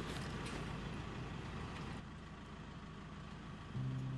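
Steady low rumble of a vehicle interior, which drops a little about halfway through; low sustained music notes come in just before the end.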